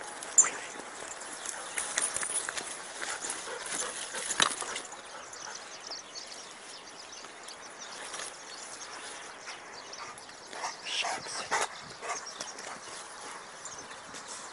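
Footsteps and rustling through dry scrub and brush, with irregular crackles and a few sharper knocks. A few short, louder sounds come together at about eleven seconds in.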